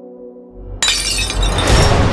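Held drone tones are cut by a deep rising rumble and then, a little under a second in, a sudden loud crash that sounds like glass shattering. A loud, dense wash of dramatic score with high shimmer follows.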